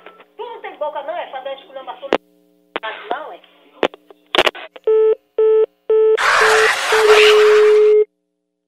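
A phone call cutting off: a few words over the telephone line and a couple of clicks, then three short beeps of a busy tone followed by a steady tone as the line goes dead. Loud laughter breaks in over the tone from about six seconds in.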